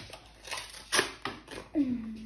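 Paper envelope being handled and opened, rustling and crackling in a few short bursts.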